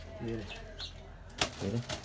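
Hands handling and pressing a large freshly woven carrizo cane shade, with a sharp click about one and a half seconds in.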